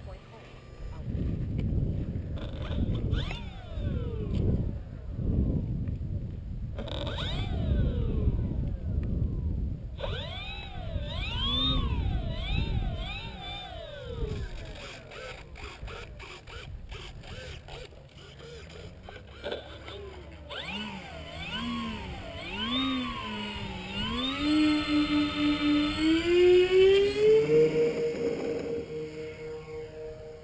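Electric motor and propeller of a Skywalker EVE-2000 RC plane during takeoff and flight. About ten seconds of low rumbling noise gives way to a propeller whine that swoops up and down in pitch as the plane flies and turns. Near the end the tone climbs in steps and holds steadier.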